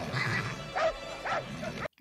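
A dog barking and yelping in short, repeated calls about half a second apart, over crowd noise and film music.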